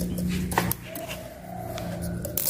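A light metallic click of a feeler gauge blade against a steel straight edge on a cylinder head, during a warp check, followed by a faint thin whine lasting about a second, over a steady low hum.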